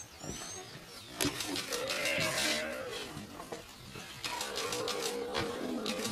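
A calf bleating in distress, two long wavering calls, one about a second and a half in and another from about four seconds, as a cheetah attacks it.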